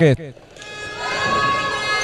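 A sustained horn-like note with many overtones swells in about half a second in and holds steady.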